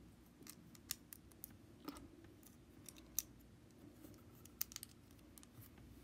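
Faint, irregular clicks and taps of plastic Lego bricks and plates being handled and pressed together.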